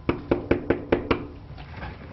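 Knuckles knocking on a front door: a run of about seven quick, sharp raps in the first second or so, then they stop.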